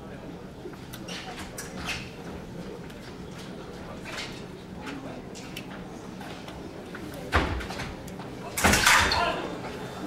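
Epee bout on a raised piste: fencers' footwork with light scattered clicks and thuds, then a sudden thump about seven seconds in and a louder burst of noise near nine seconds as the exchange ends.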